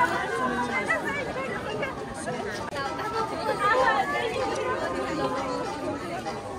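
Crowd chatter: many people talking at once, their voices overlapping, with no single voice standing out.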